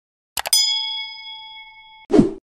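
Two quick clicks, then a single bell ding that rings on and fades slowly: a notification-bell sound effect.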